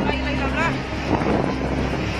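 Frightened shouting and a shrill wavering scream about half a second in, over a steady low rumble, as a tsunami wave surges ashore.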